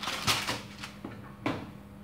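Baking paper rustling as a sheet is handled off its roll, followed by a single sharp knock about one and a half seconds in.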